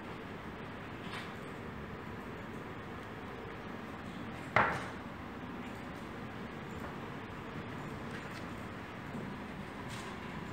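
Steady indoor room noise, broken once about halfway through by a single sharp knock or clack that dies away quickly.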